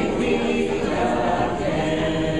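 Amish men and women singing a hymn together, unaccompanied, holding long notes.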